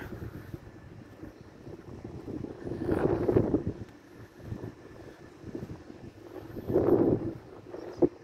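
Strong wind buffeting the phone's microphone in a steady low rumble, with two heavier gusts, one about three seconds in and one near the end.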